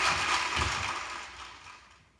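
Audience applause at the end of a live comedy track on a 1967 45 rpm record playing on a turntable, fading out to near silence over about two seconds.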